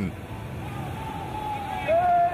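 Churning, splashing pool water and spray from a water-survival drill, with a long held call, like a voice, coming in faintly and growing louder near the end.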